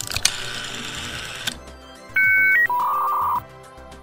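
Rotary telephone dial whirring as it is wound and spins back, then a run of electronic telephone-line beeps: a two-note beep, a short higher beep, and a lower warbling tone. Background music plays underneath.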